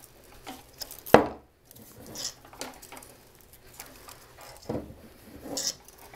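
Paddle wire being wrapped tightly around a bundle of evergreen boughs on a metal wreath form: rustling of the greens and scattered small metallic clicks, with one sharp click about a second in.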